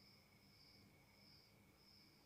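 Near silence, with a faint, steady high-pitched background sound that swells and fades about every two-thirds of a second.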